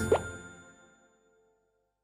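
A short cartoon bubble-pop plop, a quick glide in pitch, just as the nursery-rhyme song's last notes ring out and fade away within the first second.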